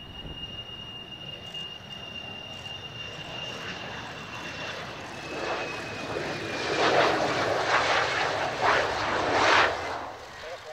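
F-4EJ Kai Phantom II's twin J79 turbojets running on landing approach. A steady high whine slowly falls in pitch, then the jet noise builds and is loudest in surges over the last three seconds as the fighter passes close and flares for touchdown.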